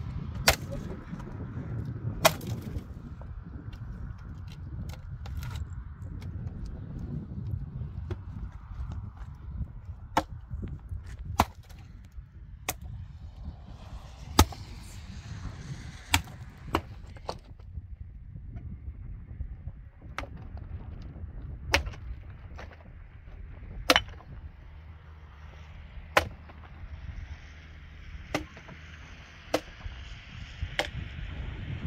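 Firewood being chopped into kindling by hand: a series of sharp strikes of a hatchet or axe on wood at uneven intervals, one every second or two, over a low steady rumble.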